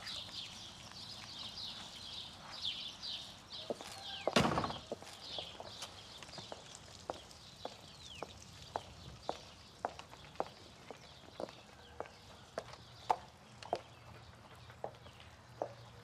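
Small birds chirping, a single loud thump about four seconds in, then high-heeled footsteps clicking steadily on a tiled floor, about two steps a second.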